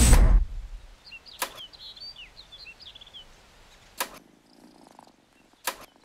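A loud trailer hit stops abruptly, leaving a quiet room with faint birdsong chirping outside. Three sharp clicks fall about two seconds apart.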